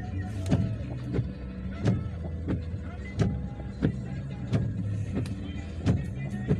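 A vehicle's engine running steadily, with a sharp tick repeating about every two-thirds of a second.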